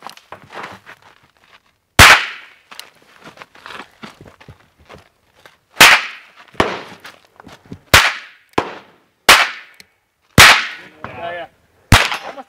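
Smith & Wesson Model 1 tip-up revolver in .22 Short, fired one shot at a time with a pause between shots for cocking the single action. Six sharp cracks come one to four seconds apart, the last right at the end, with fainter cracks and knocks between them.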